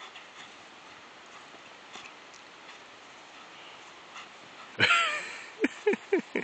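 A dog gives one loud, high whining yelp that falls in pitch, about five seconds in, followed quickly by two or three short, lower yips.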